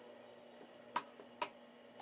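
Two short clicks about a second in, half a second apart, from handling a turntable while setting a record to play, over a faint steady hum.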